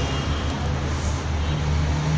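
Steady low mechanical rumble with a low hum underneath.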